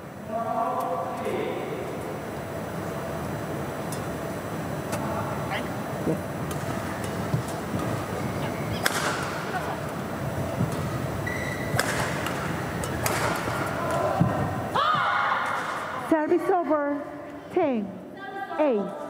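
A badminton rally: rackets hit the shuttlecock with a few sharp cracks over steady hall and crowd noise. It ends with players' shouts as the point is won.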